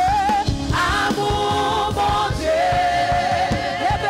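Live gospel worship song in Haitian Creole: a female lead singer with backing singers over accompaniment with a steady beat, one sung note held for about a second and a half in the second half.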